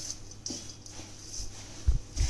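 A hand squeezing and turning chopped tender tamarind leaves in a steel bowl, giving soft rustles and crunches, with a low thump near the end.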